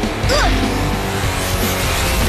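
Cartoon background music with sound effects laid over it: a short sliding squeal about a third of a second in, then a rush of noise rising in pitch near the end.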